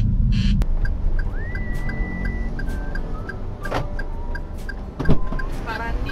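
Car cabin rumble in slow city traffic, with light ticks about every half second and a thin, faint tune over it. A sharp knock about five seconds in.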